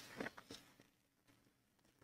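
Near silence, with a few faint short rustles of a clear plastic sleeve being handled in the first half second.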